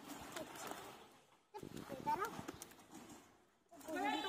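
People's voices, indistinct and not close, in two stretches with a short break in between.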